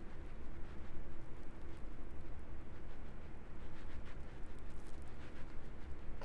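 Faint, repeated soft strokes of a makeup brush buffing liquid skin tint into the skin of the face, over a steady low hum.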